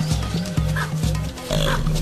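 Short animal calls, twice, over background music with a steady low bass line.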